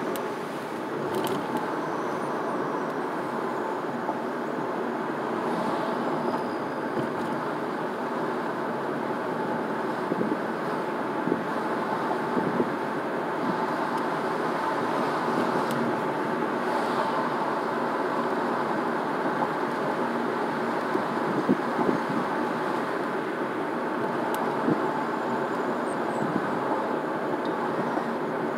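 Steady road and tyre noise of a car cruising at about 30 mph, heard from inside the cabin, with a few faint ticks.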